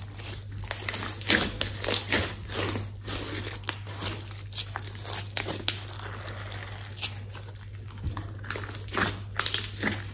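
Glossy slime stretched, folded and squeezed by hand, giving irregular sticky crackles, clicks and pops as it pulls apart and presses together. A steady low hum runs underneath.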